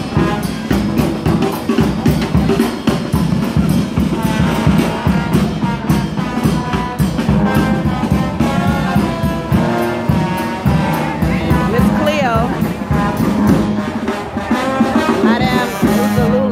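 A New Orleans street brass band playing jazz: trombone and trumpet lines over a sousaphone bass, driven by a steady beat on the bass drum.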